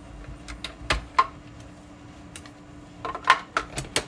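Clear plastic cutting plates and a die being handled and set onto a manual die-cutting machine: a scatter of sharp plastic clicks and taps, bunched near the end.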